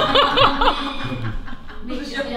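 A person laughing in a quick run of about five short, high-pitched pulses in the first second, then quieter.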